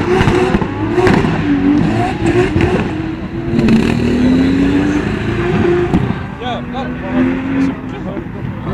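A car engine revving, its pitch climbing in several pulls of about a second each and dropping back between them.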